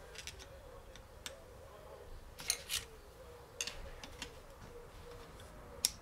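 Screwdriver tip clicking and scraping against a steel snap ring and the gearbox casing of a Peugeot BE4 gearbox as it is worked at the ring to pry it out: a few irregular light metal clicks, the sharpest near the end.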